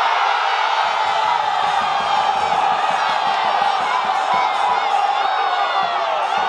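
Crowd of spectators and players cheering, whooping and shouting in celebration of a goal just scored, many voices overlapping without a break.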